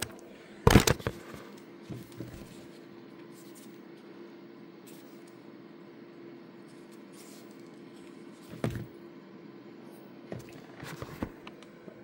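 Handling noise as a small USB thermal camera is taken out of its case: a loud knock about a second in, then a faint steady hum, a soft bump near nine seconds and light clicks near the end.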